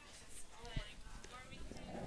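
A few short clicks from a computer mouse and keyboard, the loudest a little under a second in.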